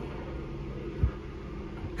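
Steady low room hum in a pause between words, with one brief soft thump about halfway through.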